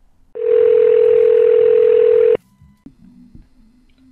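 Telephone ringback tone heard down a phone line: a single steady ring lasting about two seconds, starting a moment in, with line hiss under it. It is the call ringing at the far end before it is answered.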